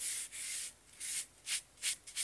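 A cloth rubbing Danish oil into the side of a wooden box: about five swishing strokes along the grain, quicker and shorter toward the end.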